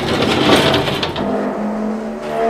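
Sound effect of old factory machinery, evoking a textile mill: a dense mechanical rushing noise that settles into a steady whine about halfway through.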